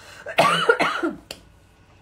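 A woman coughing into her hand: a short, loud burst of coughs about half a second in, followed by a single sharp click.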